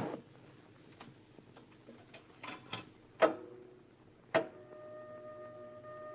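Clicks and two louder clunks from the mechanism of a coin-operated voice-recording booth being set going. After the second clunk, a steady tone or hum sets in, about two-thirds of the way through.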